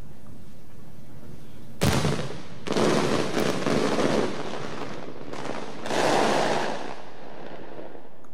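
Aerial fireworks bursting: a sharp bang about two seconds in, followed by two longer stretches of dense crackling.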